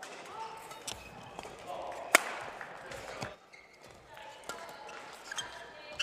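Badminton doubles rally: sharp racket strikes on the shuttlecock, the loudest a hard hit about two seconds in, with shoe squeaks on the court floor and short shouts from the players.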